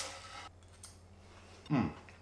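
Knife and fork cutting through a crumb-crusted courgette flower on a ceramic plate, a faint scrape in the first half second and a single light click a little before the middle, then quiet.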